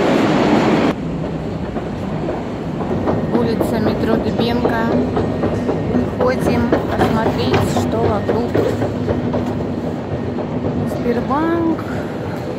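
Metro station sound. For the first second a loud rush of train noise fills the station, then cuts off suddenly. After that comes the echoing hall by the turnstiles, with clicks, footsteps and scattered voices of passers-by over a steady hum.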